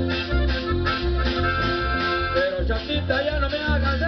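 Live band playing Mexican regional dance music in an instrumental passage without singing: a held lead melody over a steady, bouncing bass beat.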